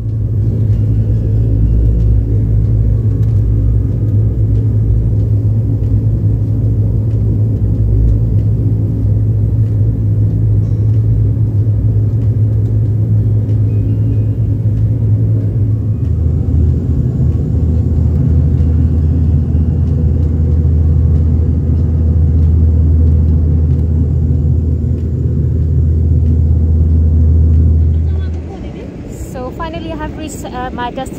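Twin-turboprop airliner's engines and propellers droning steadily, heard from inside the cabin as a loud, deep hum. The pitch of the hum shifts about halfway through, and the drone cuts off shortly before the end.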